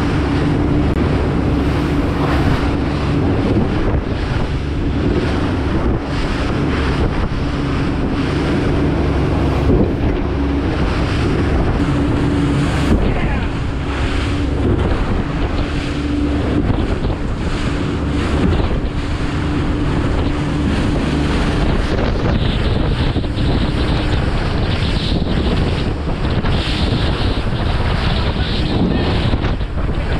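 Blue Wave 2800 Makaira center-console boat with twin 300 outboards running at speed through choppy open sea. Heavy wind buffets the microphone over the rush of spray and waves along the hull, with a steady engine hum through the first two-thirds.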